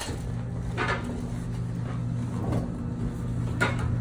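A patient pushing up and climbing off a padded treatment table, with a few short rustles and knocks from the vinyl padding and the paper sheet. A steady low hum runs under them and stops near the end.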